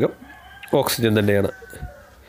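A man's voice speaks one short word or phrase about a second in, between pauses in his speech.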